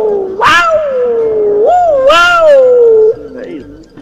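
A dog howling: two long calls, each starting with a sharp high onset and sliding slowly down in pitch, then a quieter stretch near the end.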